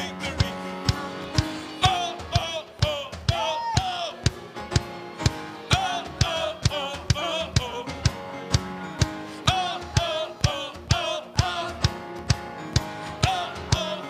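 Live band playing an upbeat song: a drum kit keeps a steady beat of about two hits a second under electric guitars, and a singer holds a wavering, vibrato-laden melody over them.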